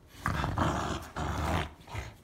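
Dog growling in play over a rope toy: two long, rough growls, each under a second, starting a moment in.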